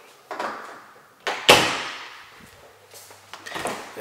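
Interior door being handled: a short brushing sound, then a loud sudden clunk about a second and a half in that fades over about a second, with a smaller knock near the end.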